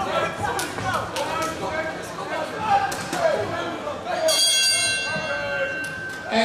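The end-of-fight signal in a kickboxing ring: a steady ringing tone starts about four seconds in and holds for nearly two seconds before stopping sharply, over shouting voices. A few sharp knocks come earlier as the fighters clinch.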